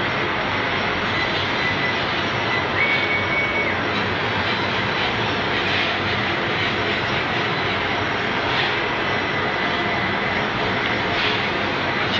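Laser cutting machine running: a steady, loud rushing machine noise with a faint high whine that steps up in pitch briefly about three seconds in, then drops back.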